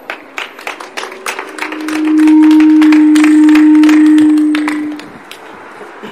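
Hand clapping from a small crowd, with a loud steady low tone that swells in about two seconds in. The tone holds for about three seconds and fades out, and it is the loudest sound.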